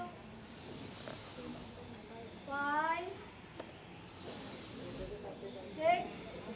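A person's voice making a short rising vocal sound about every three seconds, with hissing breaths in between.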